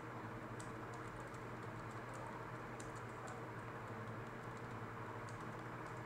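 Faint typing on a computer keyboard: scattered, irregular key clicks over a steady low hum.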